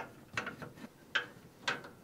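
A screwdriver turning out screws on a PC case's frame: a few short, sharp clicks roughly half a second apart.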